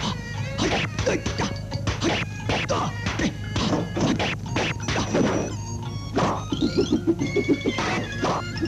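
Film-score music under a rapid run of dubbed kung-fu hit sound effects: sharp whacks and swishes, several a second, as strikes land on and swing through hanging rings.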